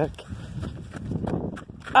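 Footsteps of someone walking across grass and onto the loose pea gravel of a playground, heard as an uneven scuffing.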